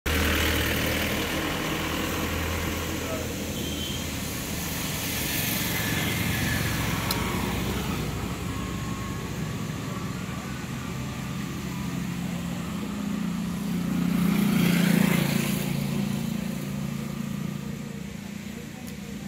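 Road traffic passing along a roadside, with one vehicle passing close and loudest about fifteen seconds in, its sound rising and then falling away. Voices are faintly heard.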